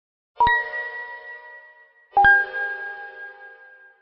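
Two bell-like chime dings from a logo sting, about two seconds apart, the second pitched a little lower. Each starts with a sharp strike and rings out slowly.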